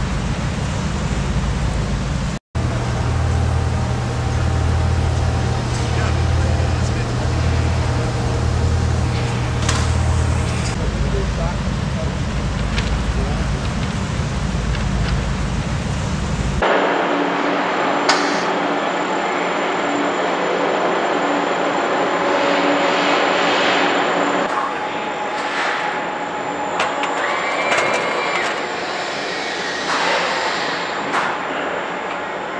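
Car assembly-line ambience: a steady machinery hum with scattered clatter and indistinct voices. The sound changes abruptly twice, about two and a half and about seventeen seconds in.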